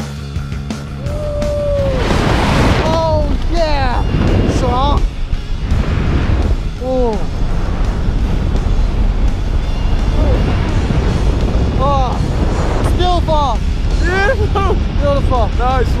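Wind roaring over the microphone during a tandem skydive, starting about a second in, with shouts and whoops rising and falling over it, most of them near the start and again near the end. Rock music plays underneath.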